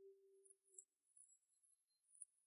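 Near silence, with only a faint steady low tone during the first second.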